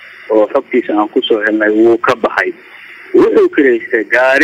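Speech only: a man talking, with the thin, narrow sound of a phone line.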